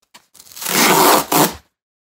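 Cardboard shipping box's pull strip being ripped open: a tearing sound lasting about a second, with a couple of small clicks just before it and a last rip near its end.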